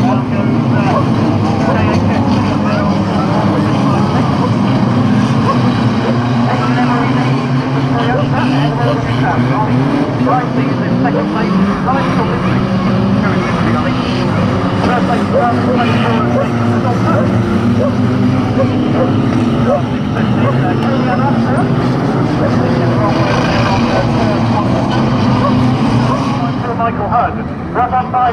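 Several banger racing cars' engines revving hard as they race round the track, many pitches rising and falling over one another. The level dips briefly near the end.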